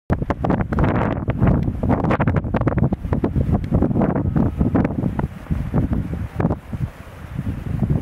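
Wind buffeting the camera's microphone in irregular, loud gusts that ease somewhat after about five seconds.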